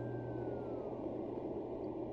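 Low, steady atmospheric drone from the story's background sound bed, with a faint high tone that glides downward during the first second.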